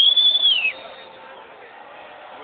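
A single high whistle blast lasting under a second, steady and then falling in pitch as it ends.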